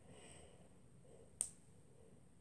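A single sharp snap about one and a half seconds in, as a small rubber loom band flicks off a fingertip while it is being looped over the fingers. Otherwise only faint handling.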